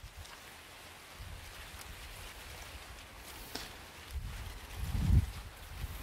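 Corn husk leaves being peeled off an ear by hand: faint rustling with a small snap about three and a half seconds in, under a low rumble of wind on a lapel microphone that swells to a louder low buffet about five seconds in.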